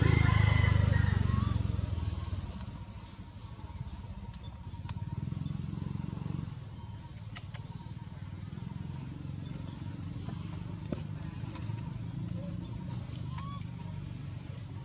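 Outdoor ambience: faint high bird chirps over a low rumble that is loudest in the first two seconds and then settles lower.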